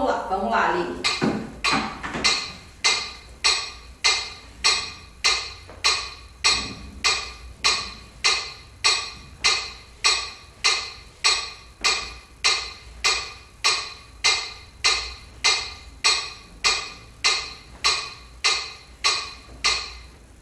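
Metronome app on a tablet clicking steadily at 80 beats per minute, a little under one click a second, each click short with a quick decay.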